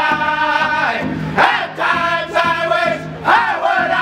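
Northern-style powwow drum group singing together in high voices over a steady unison beat, all the singers striking one large hand drum at once. The sung phrases rise and slide back down in pitch.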